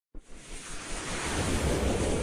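Whoosh sound effect of an animated news-logo intro: a rushing noise with a low rumble that swells steadily louder.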